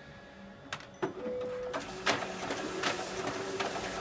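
Kyocera 5551ci copier's automatic document feeder drawing the originals through to scan them: a click and a short beep about a second in, then the feeder mechanism running steadily with rapid clicking as the sheets pass.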